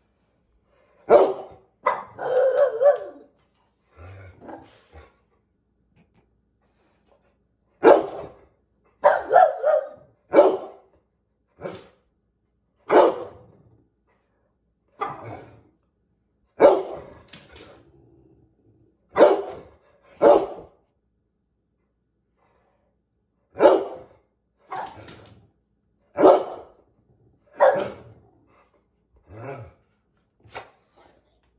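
Dog barking in short single barks, mostly a second or two apart, with pauses of a few seconds between runs and one longer bark about two seconds in.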